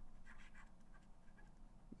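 Faint scratching of a stylus writing on a graphics tablet.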